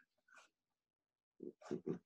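Near silence, then about a second and a half in, a quick run of faint clicks from a computer keyboard being typed on.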